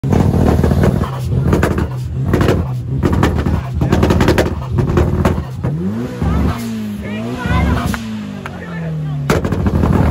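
Tuned car engine held at high revs with rapid crackling and banging from the exhaust. Then, from about six seconds in, the revs swing up and down for a few seconds, with crowd voices around it.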